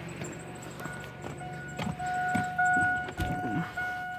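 An electronic warning chime in a Chevy truck's cab, a steady single tone from about a second in, louder near the end, with clicks and knocks of handling around it.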